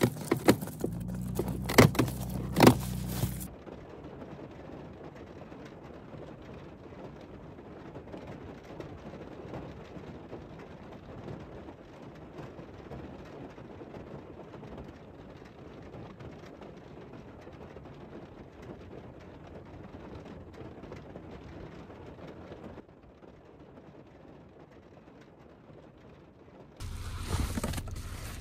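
Steady noise of a car, with sharp clicks and jingling in the first few seconds.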